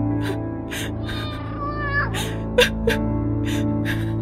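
A woman sobbing, with repeated sharp gasping breaths and a wavering, falling whimper about a second in, over a steady, low-pitched film score.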